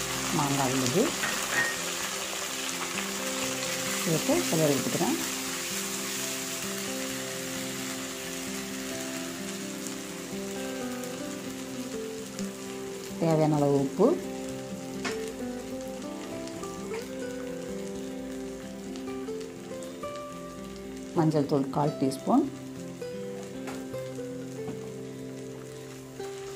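Grated raw mango sizzling in hot oil in a kadai as it is fried and stirred with a wooden spatula, the hiss strongest in the first few seconds, with a few brief louder sliding sounds about halfway through and again near the end. Soft instrumental background music with steady notes runs underneath.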